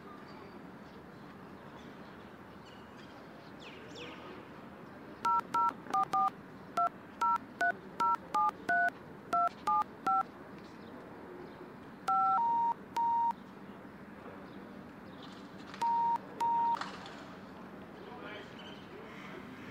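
Touch-tone telephone keypad being dialled: about thirteen quick key beeps, two to three a second, then a few longer key tones in two short groups near the end, over a steady low background hum.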